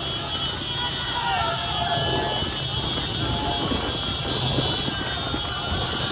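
Rubber-tyred buffalo racing cart rolling fast over a paved road: a steady rumble of wheels and rushing air, with spectators' shouts rising over it now and then.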